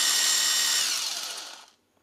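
Parkside 20 V cordless impact driver free-spinning a flat wood bit with no load: a high motor whine that holds steady, falls in pitch about a second in and dies away shortly before the end, with no hammering.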